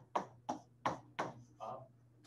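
A stylus tapping and sliding on a pen tablet: about six short, sharp taps in quick succession as a few characters are written by hand.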